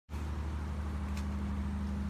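A steady low mechanical hum with a background haze of noise, and a faint short tick about a second in.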